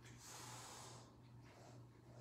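A single faint, breathy rush of air lasting about a second, over a low steady hum.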